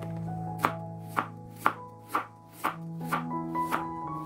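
Kitchen knife slicing a carrot on a wooden cutting board, a sharp chop about every half second, over background music.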